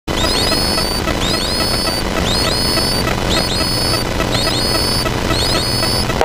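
Steady engine and propeller noise in the cabin of a Zenith CH701 light aircraft on landing approach. An electronic alert sounds over it about once a second, each time a short group of high tones gliding downward.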